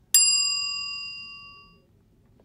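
A single notification-bell ding, a chime sound effect struck once just after the start that rings out and fades away over nearly two seconds.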